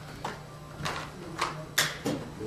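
About four short clicks and rustles from things being handled by hand, the last near the end the loudest, over a steady low hum.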